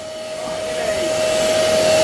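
Electric air pump running steadily, blowing air through a hose into a large inflatable zorb ball: a continuous hiss with a steady whine that grows louder.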